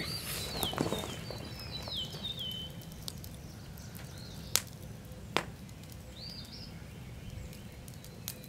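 A small bird chirping: a quick run of falling notes over the first few seconds and a short call again later. Two sharp pops from the burning wood fire come between them.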